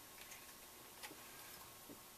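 Near silence: faint room tone with three light clicks, under a second apart.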